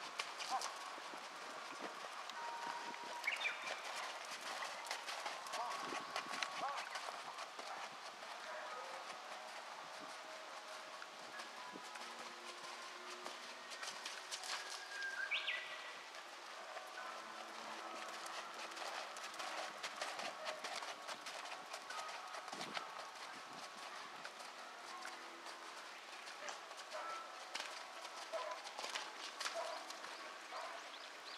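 Hoofbeats of a ridden Thoroughbred horse on a soft dirt arena: a steady run of dull thuds.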